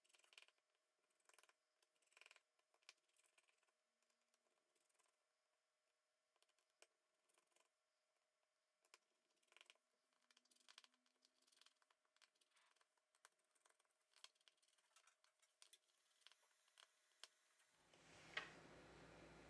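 Near silence, with only very faint scattered clicks.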